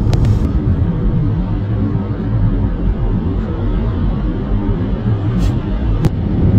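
Steady low rumble of road and engine noise inside a moving car's cabin, with no clear rises or falls.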